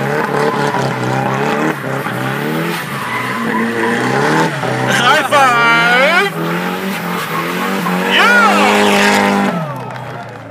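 Drift car doing donuts: the engine revs up and down under load while the rear tyres skid and squeal continuously. High squealing tones sweep in pitch about halfway through and again near the end, and the sound fades just before the end.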